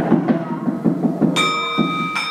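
Free-jazz playing: a double bass bowed under quick, irregular drum hits. A high, steady ringing note comes in about one and a half seconds in.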